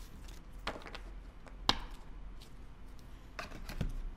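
Trading cards being handled on a tabletop: a few light, scattered taps and clicks as the stack is squared and shuffled, the sharpest one about halfway through.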